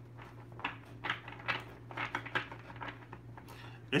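Light, irregular clicks and taps of small objects being handled on a tabletop, over a low steady hum.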